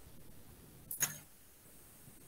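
A brief sharp click about a second in, over faint steady hiss.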